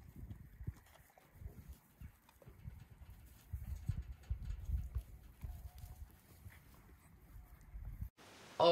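Wind buffeting a phone microphone in uneven gusts, with faint scattered clicks and rustles.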